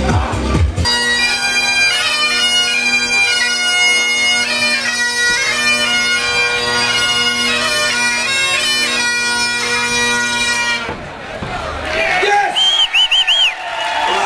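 Great Highland bagpipe playing a tune over its steady drones, starting about a second in and cutting off abruptly about eleven seconds in.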